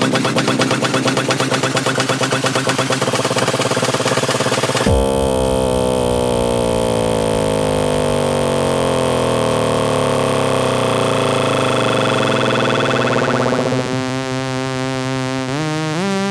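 Vietnamese house remix music: a driving beat with heavy bass until about five seconds in, when the beat and bass cut out into a breakdown of sweeping synth tones. Near the end, held synth notes take over with a short upward glide.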